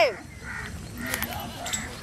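Faint bird calls over quiet outdoor background, just after a short loud vocal sound ends at the very start.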